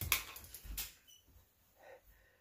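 Faint handling noise of a plastic spinning-top toy being picked up and turned in the hands: a couple of light clicks and rustling in the first second, then near quiet.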